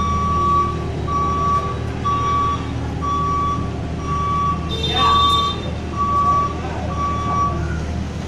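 JCB skid steer loader reversing: its back-up alarm beeps about once a second, eight beeps in all, over the steady drone of its diesel engine. A brief louder burst of noise comes about five seconds in.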